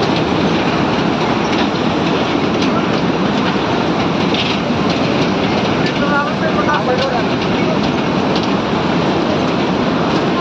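Loud, steady rushing of a mountain torrent in the gorge below, with faint voices about six seconds in.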